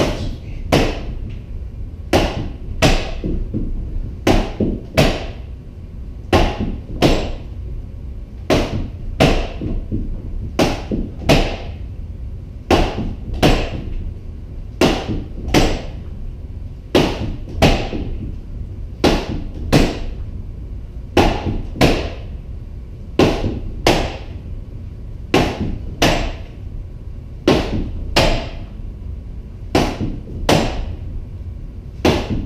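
Rattan sword striking a pell post in repeated snap shots: sharp whacks about once a second, often in quick pairs.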